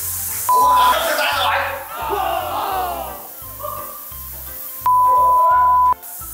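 Two loud, steady, single-pitch beep tones, a short one about half a second in and a longer one of about a second near the end, laid over background music with a steady beat and a man's voice.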